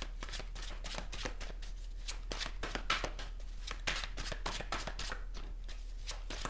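Tarot cards being shuffled by hand: a quick, irregular run of soft card clicks and flicks.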